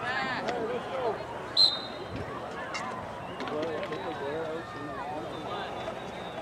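A referee's whistle blown once, short and sharp, about a second and a half in, over distant shouting voices of players and spectators.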